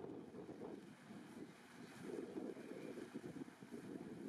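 Faint, gusty low rumble of wind buffeting the microphone over quiet outdoor ambience.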